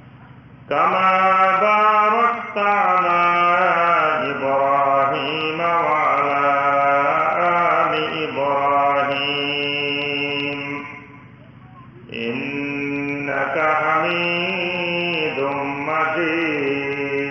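A man's voice chanting in long, drawn-out melodic phrases with gliding pitch, starting just under a second in and pausing briefly about eleven seconds in.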